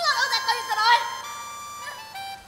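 Spoken dialogue over background music: a voice speaks for about the first second, then held musical notes carry on alone.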